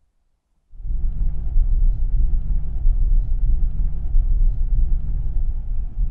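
Steady low rumble of a moving car heard from inside the cabin: road and engine noise that starts suddenly under a second in, after near silence.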